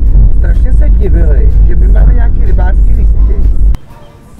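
Car cabin noise while driving: a heavy, loud low rumble of engine and road under a voice, cutting off suddenly near the end.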